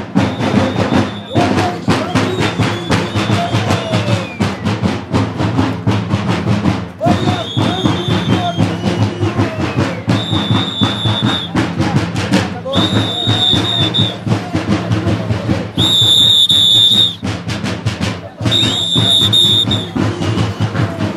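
Bear-dance troupe's drums beaten in a fast, steady rhythm, joined from about a third of the way in by repeated shrill whistle blasts, each about a second long, with shouting among the dancers.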